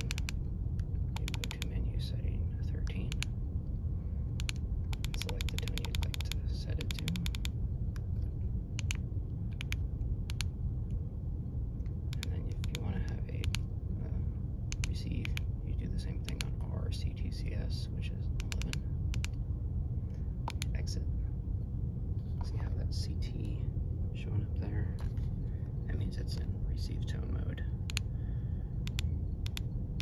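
Keypad buttons of a Baofeng UV-5R handheld radio clicking as they are pressed to scroll through its menu settings, some in quick runs and some singly, over a steady low background rumble.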